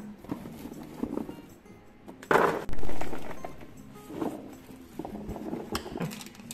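Olives being handled and dropped into a plastic basin: scattered clicks, a rustling pour about two seconds in, then a loud thump, over faint background music.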